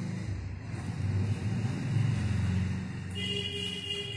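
Low engine-like rumble that swells in the middle and then eases off, with a steady high tone coming in near the end.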